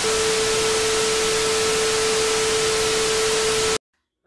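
TV static sound effect: a loud, even hiss of white noise with a steady mid-pitched tone running under it, cutting off suddenly near the end.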